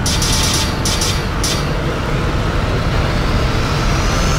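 Cinematic logo-intro sound design: a deep, sustained rumble with airy whooshes in the first second and a half, and a faint rising whine building toward the end.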